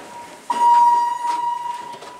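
Elevator chime: a single clear electronic tone strikes about half a second in and fades away over about a second and a half. It is the second of two identical strokes, the hall-lantern signal for a car about to travel down.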